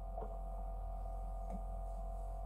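Steady low electrical hum with a faint steady tone above it. Two faint short gulps come about a quarter-second in and about a second and a half in, as beer is swallowed from a glass.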